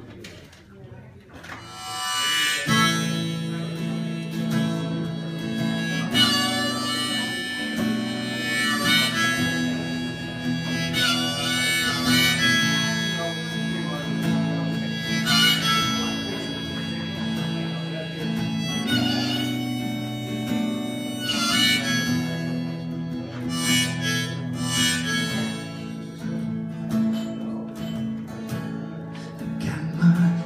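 Harmonica played from a neck rack over strummed acoustic guitar, an instrumental opening to a folk song, coming in about two and a half seconds in and carrying held, wailing notes.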